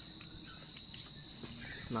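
Crickets trilling: one steady, unbroken high-pitched buzz, with a few faint clicks.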